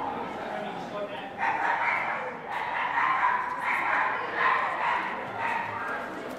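A small dog barking repeatedly, about two short, yappy barks a second from a second or so in until near the end, over street chatter.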